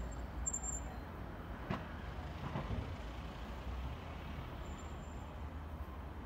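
Distant city traffic: a steady low rumble of street ambience, with a single faint click about a second and a half in.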